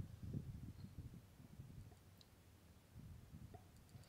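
Near silence: faint low rumbling handling noise from a handheld camera held close to the generator, heard in the first second and again around three seconds in. The generator is not running.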